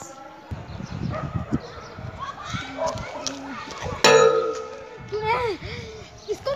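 Low handling noise and voices, with a sudden loud ringing clang about four seconds in that fades over about a second.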